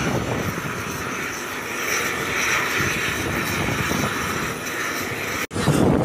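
Helicopter turbine engine running steadily, a continuous whine and rush of noise. The sound cuts out abruptly near the end.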